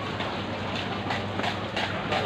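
Busy market background noise: a steady low machine hum under a constant noisy wash, with a few short knocks and scrapes.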